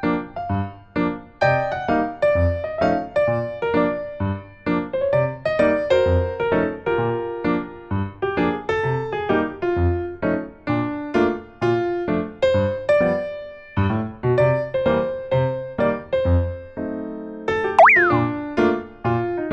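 Bouncy, child-like background music of short plucked keyboard notes over a regular low beat, with a quick sliding-pitch sound effect, up then down, just before the end.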